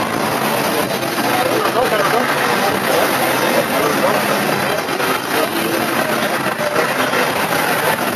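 Several Concept2 air-resistance rowing machines being rowed at once, their flywheel fans making a steady whir, under a background of many people's voices.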